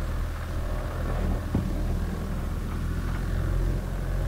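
A boat's outboard motor running steadily at low speed, a low, even hum, with one light knock about a second and a half in.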